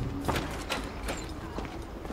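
Footsteps on pavement, a few sharp steps about every half second, over a steady low outdoor rumble.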